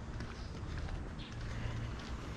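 Faint footsteps of a person walking on a paved path, over quiet outdoor background noise.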